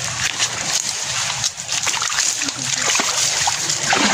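Water splashing and sloshing irregularly as a person wades through a shallow stream.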